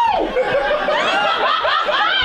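Audience laughing, several voices overlapping.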